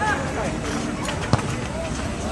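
Several voices shouting and calling out during an amateur football match, over a steady background of outdoor noise. A single sharp kick of the ball cuts through about two-thirds of the way in.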